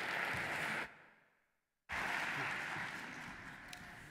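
Audience applauding. The applause drops out completely for about a second, then comes back and slowly dies away.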